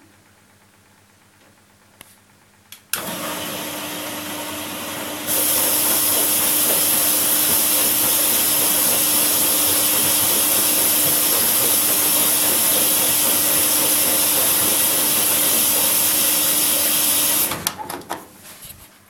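Front-loading washing machine taking in water for a rinse: after two short clicks, the inlet valve opens with a sudden hiss of rushing water over a steady hum. The flow gets louder about two seconds later and shuts off abruptly near the end.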